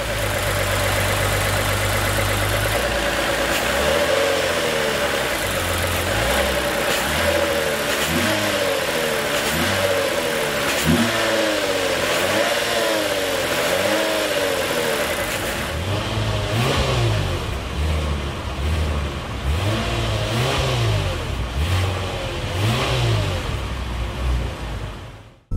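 2021 Lexus RC 300 AWD's 3.5-litre V6 idling steadily, then revved again and again in short blips, its pitch rising and falling about once a second. In the last third it is heard from the twin exhaust tips, deeper and still being blipped.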